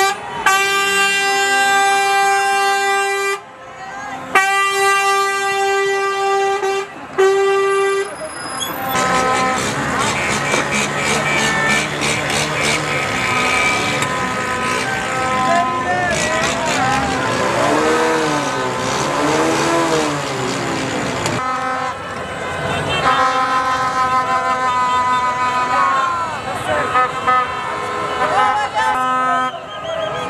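Vehicle horns sounding long steady blasts, three in the first eight seconds, then a large crowd shouting and cheering with many voices at once, and then several horns honking together again near the end.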